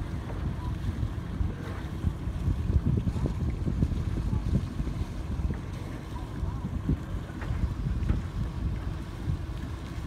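Wind buffeting the microphone over a low, uneven rumble from the schooner yacht America as it motors away under engine with its sails furled.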